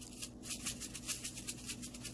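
A quick, even, shaker-like rattle of about six or seven strokes a second, over a faint low hum.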